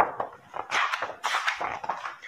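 Paper rustling as a book page is turned: a sharp click, then several short crinkling swishes.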